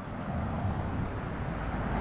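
An SUV driving slowly past close by, its engine and tyre noise a steady rumble that grows a little louder toward the end.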